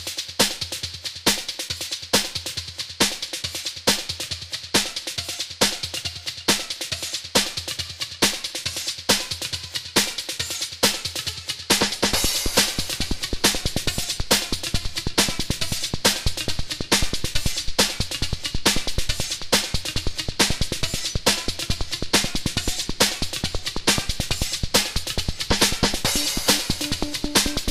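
Melodic breakbeat dance track's drum pattern: kick, snare and hi-hats in a steady fast rhythm, with a deep bass part filling in about halfway through.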